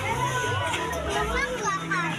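Crowd of women and children talking and calling out over one another, with excited high-pitched voices, over a low steady hum.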